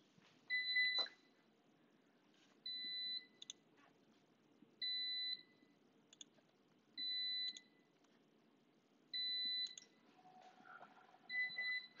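Electronic beeper sounding a short, steady high beep about every two seconds, six times, each beep ending in a faint click. The beeps come from the antenna measurement system as it runs a radiation-pattern data collection.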